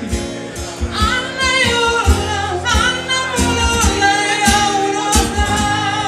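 A woman singing lead in Finnish pop style, with acoustic guitar accompaniment over a steady low beat.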